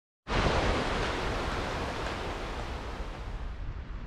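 Small forest stream running over rocks: a steady rush of water that slowly fades toward the end.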